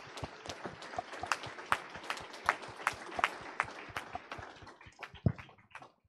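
Audience applauding: a run of scattered hand claps, fairly quiet, that thins out near the end.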